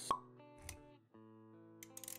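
Intro sound effects over soft background music. A sharp pop with a short ringing tone comes just after the start, then a second brief hit about two-thirds of a second in. Held music notes come back about a second in.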